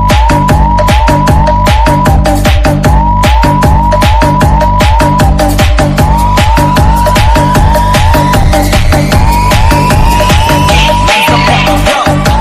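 Khmer nonstop dance remix: a fast, pounding electronic beat under a short siren-like rising synth hook repeated about twice a second. A long rising sweep builds through the middle.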